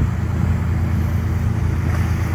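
Lobster boat's engine running steadily under way, a continuous low drone.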